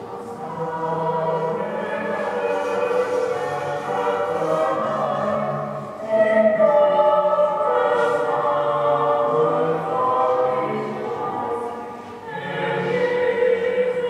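A choir singing slow, long-held notes in several voices, growing louder about six seconds in.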